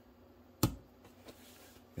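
A single sharp click a little over half a second in, from a small HO-scale model locomotive motor being handled as its brush spring is hooked back in, followed by a couple of faint ticks.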